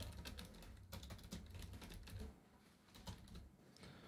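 Faint typing on a computer keyboard: a quick run of keystrokes for about the first two seconds, then a few scattered key clicks.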